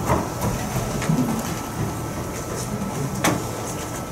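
Lecture-room background noise with a faint steady high tone and one sharp click a little after three seconds in.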